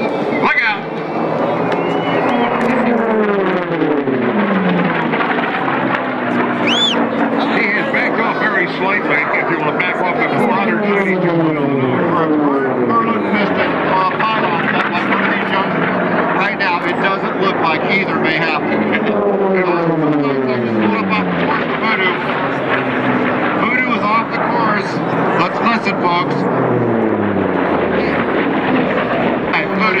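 Piston-engine unlimited-class racing warbirds pass at full power four times, roughly every eight seconds. Each pass is a loud propeller-engine drone that drops in pitch as the plane goes by.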